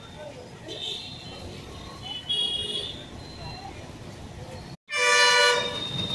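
Vehicle horns sounding over low traffic rumble: a short toot about a second in and another at about two and a half seconds, then, after a moment's dropout, a loud, longer horn blast near the end.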